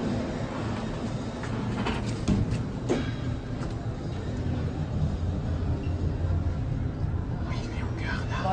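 Edelma traction elevator car travelling, a steady low rumble and hum, with a few light clicks and knocks about two to three seconds in.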